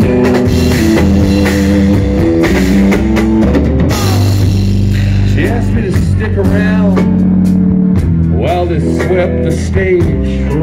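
Live rock band playing an instrumental passage: hollow-body electric guitar lead over bass guitar and drum kit. The guitar notes bend up and down in the second half.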